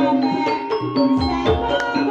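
Javanese gamelan accompaniment for ebeg dance: ringing pitched xylophone-like tones playing a steady melody, punctuated by a few deep kendang hand-drum strokes.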